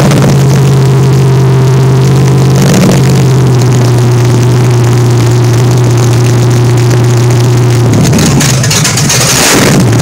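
A 400 cubic-inch small-block Chevy V8 with a Holley 750 four-barrel carburetor runs on an engine stand through open headers. It holds a steady fast idle for about eight seconds, then the throttle is worked and the steady note breaks up.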